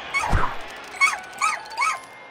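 Four short, high yelping cries like a small dog's, each rising and falling in pitch, with a low falling thud about a third of a second in.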